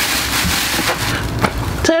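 Thin plastic grocery bag rustling and crinkling as it is stretched and tucked over the rim of a small plastic pail, with a couple of small clicks.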